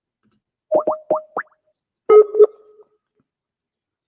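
Internet call app sounds: four quick rising chirps about a second in, then a two-note ring tone that repeats about two and a half seconds later. These are the call being hung up and an outgoing call ringing.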